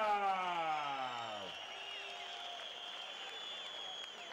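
A ring announcer's long, drawn-out call of a fighter's name over the microphone, falling in pitch and fading out about a second and a half in. It gives way to an arena crowd cheering and whistling.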